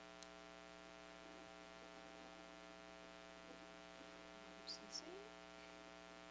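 Near silence with a steady electrical mains hum. A faint tick comes just after the start, and a couple of small handling clicks come about five seconds in.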